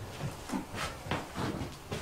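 A few soft, irregular knocks of footsteps on wooden floorboards over a low steady hiss.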